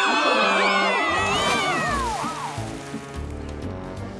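Several cartoon characters screaming together as they fall, a cat-like yowl among them, their cries sliding down in pitch and trailing off about two seconds in. Background music with a pulsing bass beat runs under them and carries on alone.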